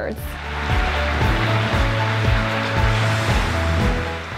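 Instrumental background music: held notes over a low beat about twice a second, under a loud hissing wash like a swelling cymbal or whoosh.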